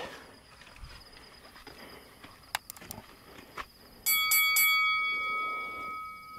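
Faint clicks, then about four seconds in three quick metallic strikes, followed by a bell-like ring that fades over about three seconds.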